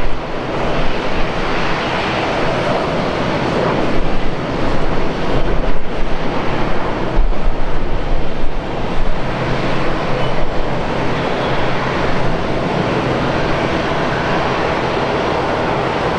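Boeing 737-200 freighter's Pratt & Whitney JT8D jet engines, loud through the final approach and touchdown about eight seconds in, then running steady as the jet rolls out on the runway.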